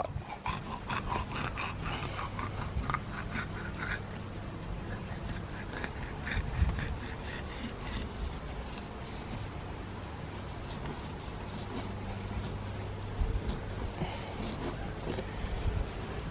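A blunt bait knife cutting and scraping along a whiting on a plastic cutting board: faint, irregular scrapes and small clicks over a steady low hum.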